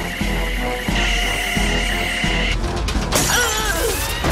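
Cartoon music score over science-fiction sound effects: a sustained beam tone and low rumble as energy weapons fire, then about three seconds in a sudden loud crackling burst as a control panel shorts out in sparks.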